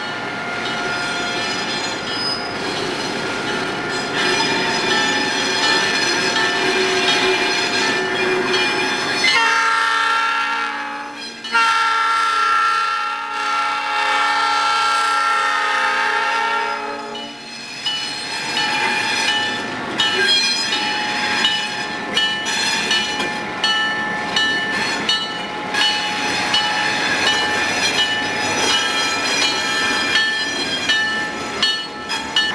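Train running on jointed track, heard from aboard. About nine seconds in, the locomotive horn sounds a short blast and then a long one of about six seconds. After the horn, the wheels click steadily over the rail joints.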